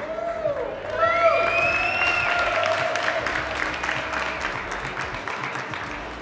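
Audience applauding and cheering, with long high whoops held over the clapping. They start about a second in, and the applause slowly fades toward the end.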